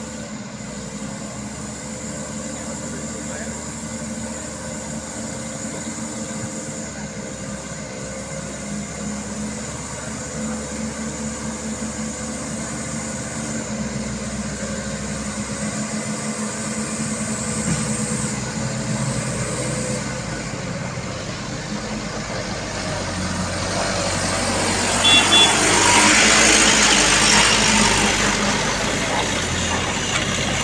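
Heavy diesel truck engine running at low speed as a loaded truck creeps through mud on a hill, growing louder. Near the end a loud rushing noise builds and peaks as a truck passes close.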